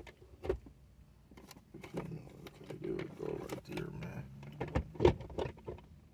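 Scattered knocks and clicks of things being handled and moved about inside a vehicle cab, with a faint low mumbling voice underneath from about two seconds in.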